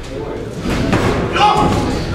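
Ringside voices shouting over dull thuds from the boxers in the ring, a few sharp knocks among them.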